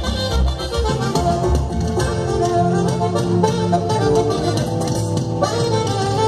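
Live band music from the stage, a tune with sustained melody notes over a steady bass beat, played loud through the arena loudspeakers.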